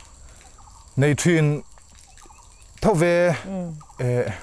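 A man's voice: two drawn-out spoken sounds, the first about a second in and the second about three seconds in, at the same pitch as the talk around them.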